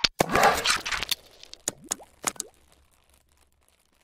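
Sound effects for an animated intro: a sharp tap-like click, a dense swishing burst lasting about a second, then a few quick pops with short rising blips, dying away by about three seconds in.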